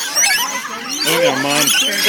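A flock of rainbow lorikeets feeding together, many shrill, short calls overlapping at once.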